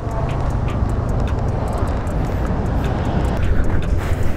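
Yamaha NMAX 155 scooter's single-cylinder engine running as it rides along, mixed with steady wind noise on the microphone.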